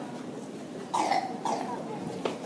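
A person coughing twice, the first cough about a second in and the louder, over low crowd chatter.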